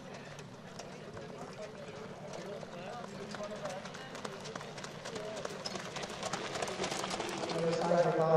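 Hoofbeats of a harness horse pulling a sulky on a gravel track, a rapid patter of hoof strikes growing louder as the horse nears, under faint background talk. A louder voice comes in near the end.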